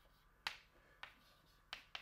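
Chalk tapping against a blackboard while words are written: four faint, sharp taps, the first about half a second in and the last two close together near the end.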